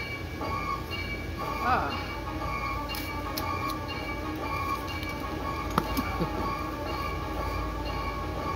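Spooky Halloween sound effects playing from yard decorations: a held electronic chord that runs steadily, over the constant low hum of the inflatable decorations' blower fans. A short child's voice comes about two seconds in, and a sharp click near the six-second mark.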